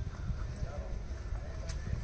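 Footsteps on bare ground and low, uneven thuds from a handheld phone microphone as the person filming walks. A single sharp click comes near the end, and faint voices are heard in the background.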